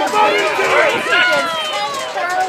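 Several people's voices talking and calling out over one another, with no single clear speaker.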